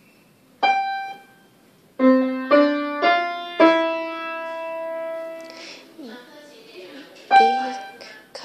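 Piano played slowly as single notes: one note, then a short phrase of four notes, the last held and left to ring for about two seconds, then another single note near the end.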